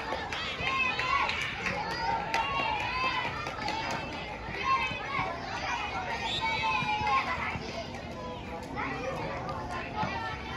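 Children's voices shouting and calling out, several at once, on an open football pitch.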